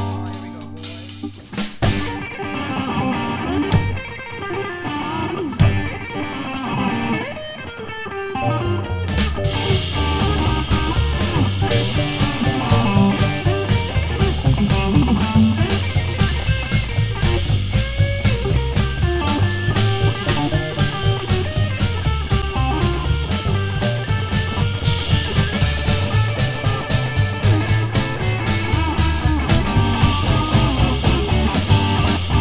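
Rockabilly trio playing live: electric guitar over upright bass and drum kit. A few seconds in, the cymbals drop out for about seven seconds, leaving guitar and bass to carry the tune, then the full band comes back in.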